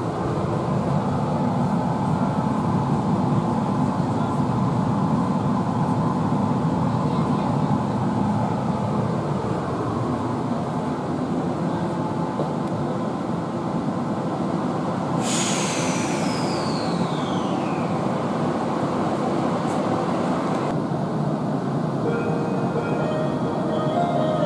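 Tokyo Metro Ginza Line 1000-series subway car running, heard from inside the car, a steady rumble and rattle of wheels and motors. About two-thirds of the way in, a high whine sets in and falls steadily in pitch as the train slows, then cuts off suddenly some five seconds later as it comes to a stand at the platform.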